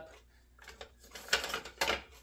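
Kitchen utensils rattling in a utensil holder as a wooden spoon is pulled out: a few short clattering sounds, the sharpest near the end.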